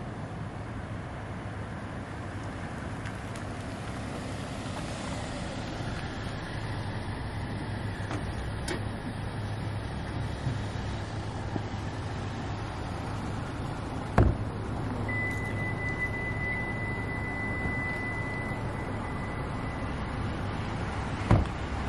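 Street ambience with a steady low hum of traffic. A single sharp thump comes about two-thirds of the way through, followed by a steady high-pitched electronic tone that lasts about five seconds.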